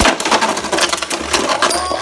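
Beyblade Burst tops ripped from their launchers into a plastic stadium, then rapid clicking and clattering as they clash with each other and the stadium wall.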